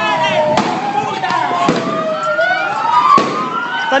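Sirens wailing slowly up and down, with three sharp bangs spread across the few seconds, which the people there take for shots being fired.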